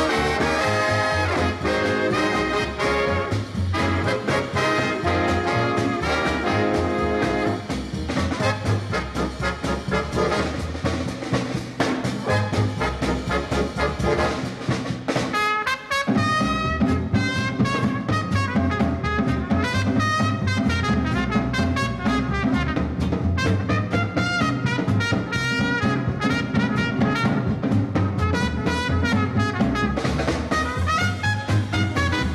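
Big band playing a swing arrangement of a Dixieland tune: trumpets and trombones over a drum kit. The band drops out for a moment near the middle, then comes back in.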